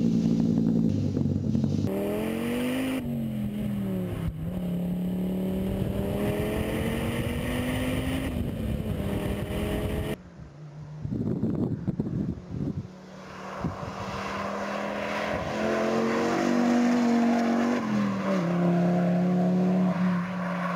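Donkervoort D8 GTO-JD70's turbocharged Audi five-cylinder engine pulling hard, its pitch climbing slowly and dropping sharply at each gear change. About ten seconds in it falls away briefly with a few knocks, then builds and climbs again.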